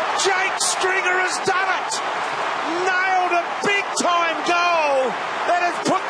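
Big stadium crowd roaring and cheering for a goal just kicked, with individual shouts and whoops rising and falling above the din.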